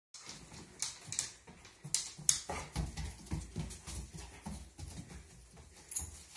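Husky-type dog breathing rapidly in short puffs as it searches nose-down for a scent, with a few sharp clicks in the first couple of seconds.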